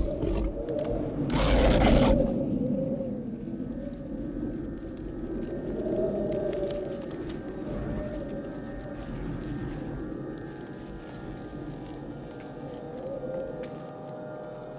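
Eerie film soundtrack: slow, wavering, moaning tones over a low rumble. A loud burst of noise comes about a second and a half in.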